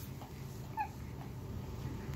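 Newborn baby making a faint, short whimper about a second in, over a steady low hum.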